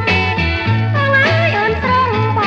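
Old Cambodian dance-song recording from around 1971: a vocal melody over a band with a steady, repeating bass line.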